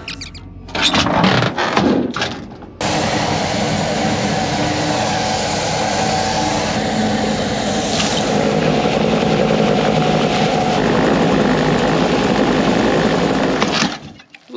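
A few seconds of clattering handling noise, then an engine running steadily and loudly, cutting off suddenly at the end, while the grain drill is being filled with oat seed.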